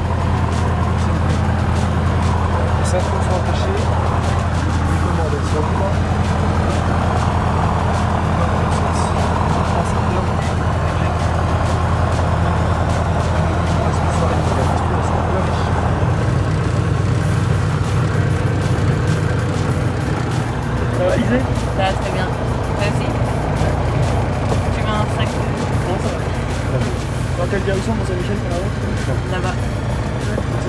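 A light aircraft's piston engine runs steadily, heard from inside the cabin, with music laid over it. The engine note changes about halfway through.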